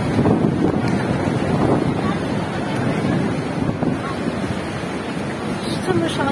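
Strong storm wind gusting and buffeting the phone's microphone in a steady, loud rush.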